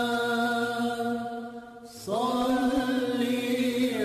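Intro music of sustained, chant-like vocal tones: a held note fades out about halfway through, and a new one swells in with a slight rise in pitch.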